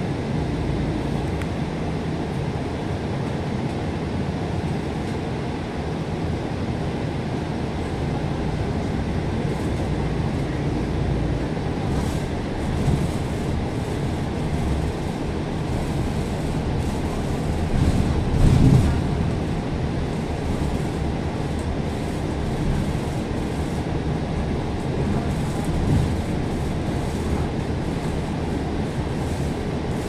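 Steady low drone of a moving bus's engine and tyres heard from inside the cabin, with a few short louder bumps; the loudest comes about two-thirds of the way through.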